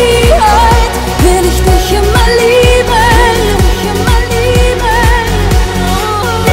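Up-tempo German pop song: a woman's voice sings held, wavering notes over a steady kick-drum beat of about two beats a second and a full backing track.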